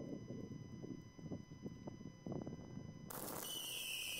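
Mass ignition of firework batteries. Low, muffled pops and crackles come first, then about three seconds in a sudden rushing hiss starts as the row of batteries begins to fire.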